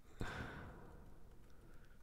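A short breath out, like a sigh, near the microphone, fading within about half a second, then near silence.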